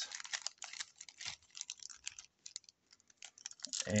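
Foil trading-card packs crinkling and clicking in the hands as they are handled: a quick run of small irregular clicks that thins out midway and picks up again near the end.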